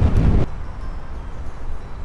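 Wind buffeting the microphone: a heavy, gusty rumble for the first half second, easing to a steadier low rush.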